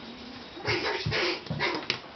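A puppy giving three short, quick barks in the second half, with a sharp click just after the last one.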